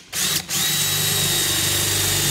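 Cordless drill boring a pilot hole through iron sheet with a small guide bit: a short burst of the motor, a brief stop, then steady running with a constant whine from about half a second in.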